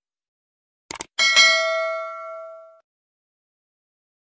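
A quick click about a second in, then a single bell ding that rings and fades away over about a second and a half: the sound effect of a subscribe-button and notification-bell animation.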